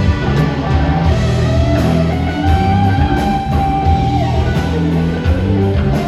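Live rock band playing, with electric guitars, bass and drums. A long held high note stands out in the middle, rising slightly as it starts.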